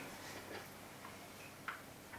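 Quiet room tone in a pause between spoken sentences, with a few faint, irregular clicks; the sharpest comes near the end.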